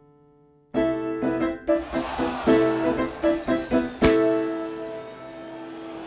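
Piano jingle: a held chord fades out, then a run of short, punchy chords starts just under a second in. A single sharp crack lands about four seconds in.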